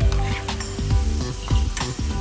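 Minced pork and soybeans sizzling as they are stir-fried in a nonstick wok, with the spatula stirring and scraping through them. Background music with a steady beat plays throughout.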